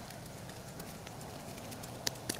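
Faint rustling with a few light clicks from hands working in soil and dry leaf litter while planting.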